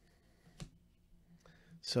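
Trading cards handled in gloved hands, quiet apart from one faint, brief click a little over halfway into the first second. A man starts speaking right at the end.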